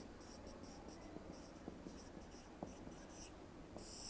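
Felt-tip marker writing on a whiteboard: a run of short, faint squeaky strokes as letters are written, with a louder, longer stroke near the end.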